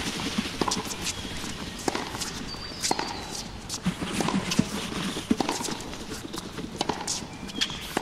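Running footsteps of two people on a dirt trail covered in dry leaves: irregular footfalls, one after another.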